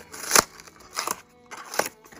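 A small paperboard blind box being torn open along its perforated tab, giving three sharp crackling snaps of tearing card, the loudest about a third of a second in.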